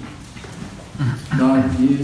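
A man's voice speaking Romanian through a microphone in a hall, starting after a pause of about a second.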